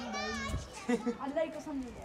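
Voices talking in the background, children's voices among them, with no clear words.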